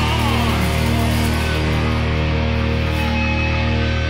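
Doom metal band playing live: distorted electric guitars and bass guitar holding heavy low chords, with drums and keyboard. A sung note with vibrato slides down and ends just after the start, leaving the instruments alone.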